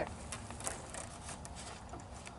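A few light clicks and rattles from a tic-tac-toe cylinder on a playground panel being spun round, over a steady low rumble.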